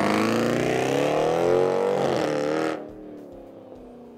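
2014 Jeep Grand Cherokee SRT's 6.4-litre Hemi V8 accelerating hard through a loud bimodal exhaust, revs climbing with a brief dip about two seconds in, then fading fast as the car pulls away.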